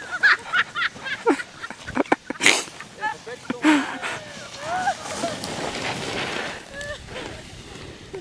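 Several people's voices calling out and laughing, broken by a few short rushes of noise about two seconds in.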